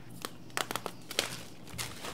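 Thin clear plastic wrapping crinkling as it is handled and pulled off, a run of short, sharp crackles.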